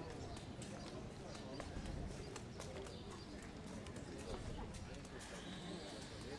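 Irregular clicking footsteps of hard-soled shoes, with faint voices.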